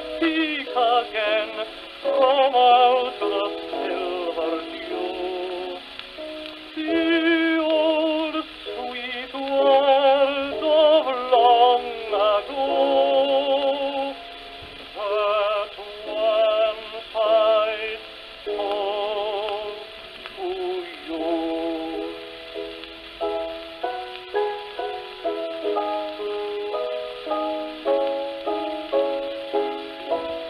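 Old 78 rpm gramophone record of a tenor singing a ballad with piano accompaniment, the voice holding long notes with wide vibrato. About two-thirds of the way through the voice drops out and the piano plays on alone. The sound is narrow and thin, as on an early record.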